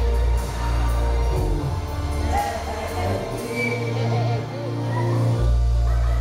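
Live band music with a strong bass line, its low notes held and changing every second or two.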